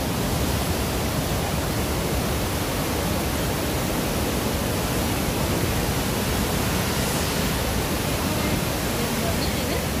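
Flooded river of muddy water rushing through rapids, a loud steady rush with no letup.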